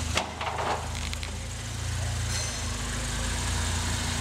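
Ford Fiesta ST's turbocharged 1.6-litre four-cylinder engine running steadily at low revs as the car is driven off slowly.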